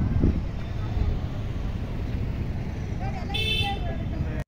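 Street traffic rumbling, with a short vehicle horn toot about three and a half seconds in.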